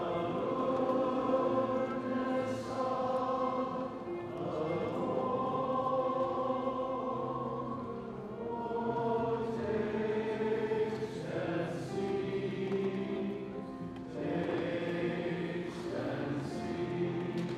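Choir singing a slow communion hymn, many voices holding long notes.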